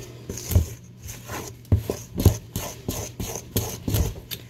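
A spoon stirring and scraping thick cake batter in a metal mixing bowl, with irregular knocks and scrapes against the bowl.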